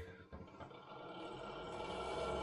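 RV range hood exhaust fan switched on with a small click, its motor hum faint at first and growing steadily louder as it spins up.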